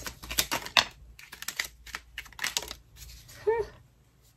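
A deck of tarot cards being shuffled by hand: a rapid run of sharp, soft clicks and flicks of card on card, thinning out after about three seconds. A short voiced sound comes about three and a half seconds in.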